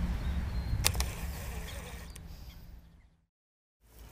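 Wind rumbling on an outdoor microphone at the lake edge, with a sharp click about a second in and a fainter one later. The sound fades out to silence near the end.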